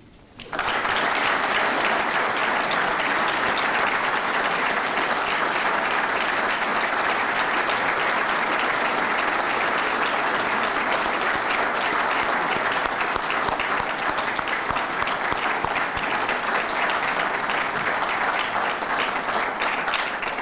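Audience applauding at a steady level after a speech ends, beginning about half a second in.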